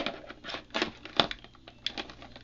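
Irregular clicks and light knocks of a coiled charger cord and its plug being handled and tucked into a plastic equipment case.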